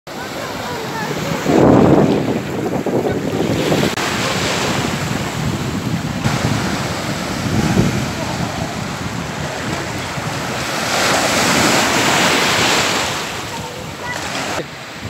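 Small sea waves breaking and washing up a beach, with wind on the microphone. The wash swells louder about two seconds in and again near the end.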